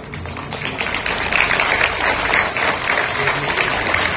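Audience applauding, swelling about a second in and then holding steady.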